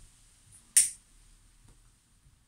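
A lighter struck once, a single sharp click about a second in, as a tobacco pipe is lit.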